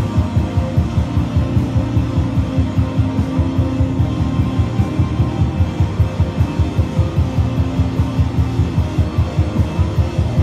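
Live amplified electric string instrument played over a backing track, loud and bass-heavy with a steady pulsing beat of about three beats a second.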